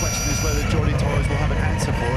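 Ducati V21L electric MotoE racing motorcycles at speed, making a steady high-pitched electric motor whine over wind and road rumble.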